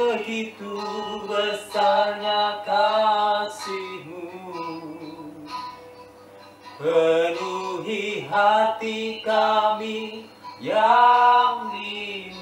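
A man singing a slow melody in held, drawn-out notes, in two groups of phrases with a quieter pause of a couple of seconds in the middle.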